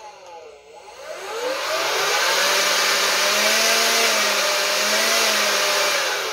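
Lazyboi 20-volt cordless leaf blower's electric motor and fan spinning up about a second in, then running steadily with a rushing whir and a whine, easing off at the very end.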